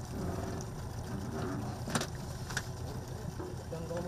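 Boat's outboard motor idling low and steady, with two sharp knocks about two and two and a half seconds in as people step onto the aluminium deck, and faint voices.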